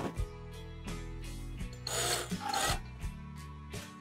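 Cordless drill driving a screw into plywood, with a short rasping burst about two seconds in, over background music.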